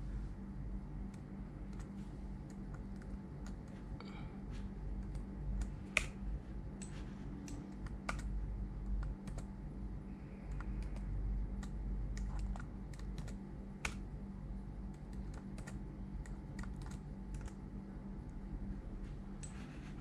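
Scattered, irregular clicks of a computer keyboard being typed on, over a steady low hum.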